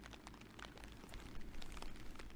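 Faint outdoor ambience: scattered light ticks over a steady low rumble, a little louder from about a second and a half in.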